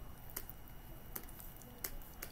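A few soft, scattered clicks and taps of computer input, about five spread over two seconds, over faint room background.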